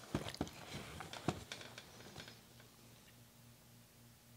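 Faint handling sounds as a small cardboard cookie box is picked out of a gift chest and set on a table: a few light clicks and rustles over the first two seconds, then quiet with a faint low hum.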